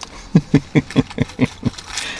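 A man laughing: a run of about ten short, evenly spaced chuckles starting about a third of a second in and trailing off near the end.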